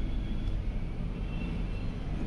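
Steady low background rumble with no distinct clicks or taps.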